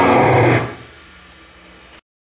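Live metal band with distorted electric guitars, bass and drums playing loud, then stopping sharply about half a second in. A faint steady amplifier hum is left until the sound cuts off near the end.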